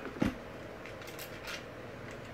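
Small handling noises from a hand-held skateboard part or tool: one sharper click about a quarter second in and a few faint ticks around a second later, over quiet room tone.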